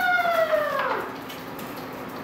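A dog howling: one long, drawn-out call that sinks in pitch and dies away about a second in.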